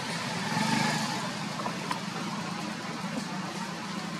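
A steady low engine hum, like a motor vehicle running, with a single faint click about two seconds in.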